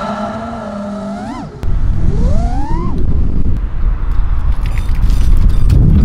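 FPV quadcopter's brushless motors whining, their pitch sweeping up twice in quick succession as the throttle is punched. From about a second and a half in, a loud rumble of wind and prop wash takes over.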